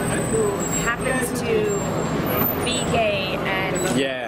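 A woman talking over the steady rumble of traffic at a busy curb, where a bus is running.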